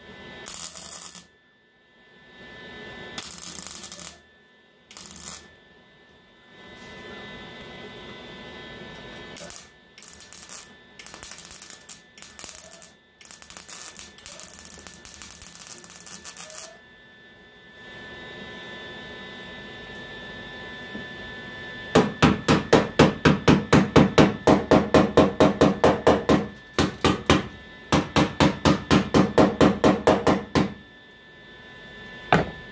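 MIG welder laying short stitch welds on a sheet-metal patch in a car fender: a string of brief arc hisses and crackles, each a second or less, with pauses between. About 22 seconds in, a hammer strikes the welded patch rapidly, about five blows a second, in two runs with a short break.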